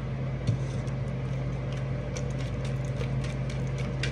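A deck of tarot cards being shuffled and handled, giving faint scattered clicks and snaps over a steady low hum in the room.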